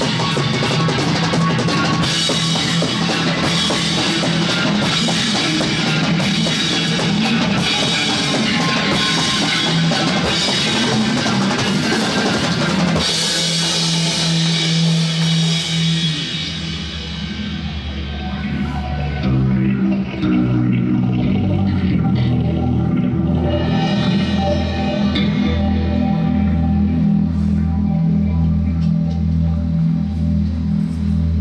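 Live rock band playing psychedelic rock: a drum kit, played with mallets, pounds with dense cymbal and drum hits for about the first 13 seconds. Then the cymbals ring out and the music settles into sustained electric guitar and bass tones, with a slow, steady pulsing low note near the end.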